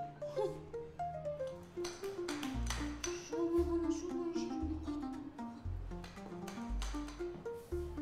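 Light comedic background music: a melody of short stepping notes, several runs going down in pitch, joined about two and a half seconds in by a low bass note roughly once a second.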